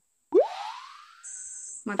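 Cartoon-style "boing" sound effect for a like-button animation: a sudden quick upward swoop in pitch with a fading tail of about a second, followed by a brief high whistle.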